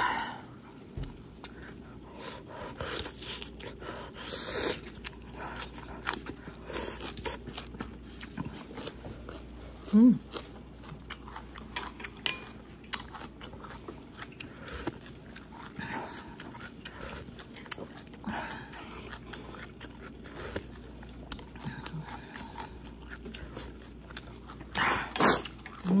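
A person chewing food close to the microphone: a steady run of small wet mouth clicks, with a short hummed "mm" about ten seconds in.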